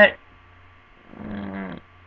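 A man's voice: the word "that" right at the start, then about a second later a drawn-out wordless vocal sound held at a steady low pitch for under a second. A faint steady electrical hum lies underneath.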